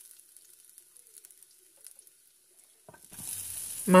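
Minced garlic frying faintly in hot oil in a wok, with a few light spatula taps. About three seconds in, a much louder sizzle starts as chopped vegetables are tipped into the hot oil.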